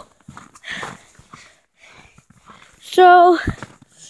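Footsteps crunching on packed snow, then a short wordless vocal sound from a boy about three seconds in, followed by a soft thud.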